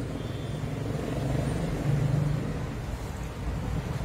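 Low rumble of a passing motor vehicle, swelling about two seconds in and then easing off.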